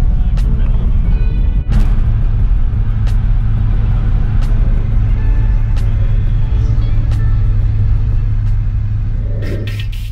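Steady low drone of a car's engine and road noise heard from inside the cabin while driving, with background music laid over it.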